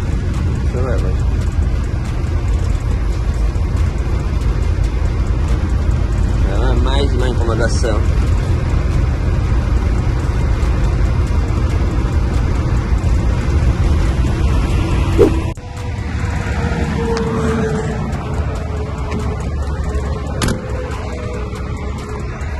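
Steady low drone of a truck's engine and road noise heard from inside the cab while driving, with background music mixed over it. About fifteen seconds in the drone cuts off abruptly, leaving quieter music with a held tone.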